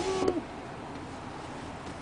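A short hummed vocal sound at the very start, then steady faint background noise inside a car's cabin.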